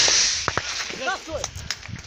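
The rolling echo of a shoulder-fired rocket launcher's blast dies away over the first half second. Then come a few sharp gunshots: a close pair about half a second in and one more near the end.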